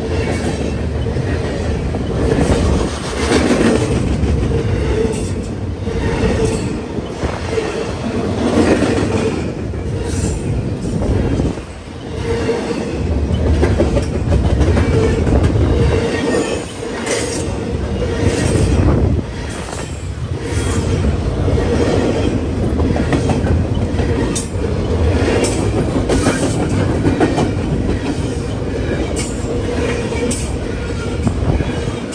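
Intermodal freight train of container well cars rolling past close by: continuous loud rumble of steel wheels on rail, with repeated sharp wheel clacks and a steady tone running under it.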